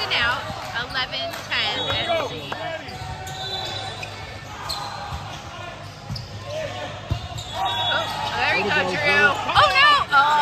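A volleyball rally in a large gym, with sharp knocks of the ball being hit and players' shouts and calls, strongest near the start and again near the end.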